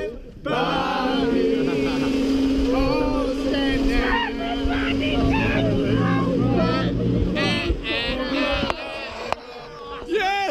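A small canal boat's motor running steadily, with a group of men shouting and cheering over it; the voices die down near the end.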